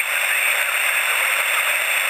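Steady hiss of shortwave band noise from the loudspeaker of a homebrew direct-conversion receiver tuned to 20 metre single-sideband, in a pause in the received speech. The hiss is narrow and thin, with almost no bass.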